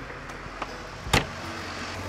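New Holland tractor's diesel engine idling steadily, heard from inside the cab, with one sharp knock about a second in.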